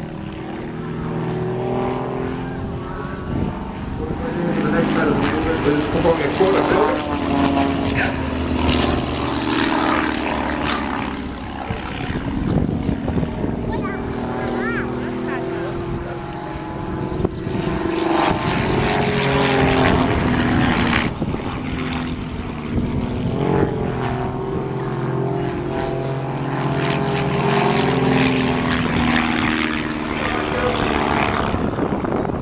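Two Van's RV-7 light aircraft flying formation aerobatics, their piston engines and propellers droning continuously, the pitch slowly rising and falling as they loop, climb and dive.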